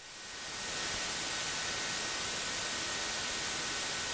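Steady radio static hiss between ATC transmissions, fading in over about the first second, with two faint steady high tones under it.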